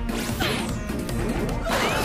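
Cartoon action music with crash sound effects, one about half a second in and a louder one near the end, and a falling whistle-like sweep early on.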